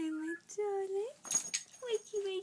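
Labrador whimpering in her sleep: two drawn-out, high whines in the first second, the first dipping then holding and the second rising at its end, a short breathy huff partway through, and another whine beginning near the end.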